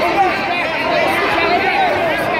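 Crowd of spectators chattering in a gymnasium, many voices overlapping with no single voice standing out.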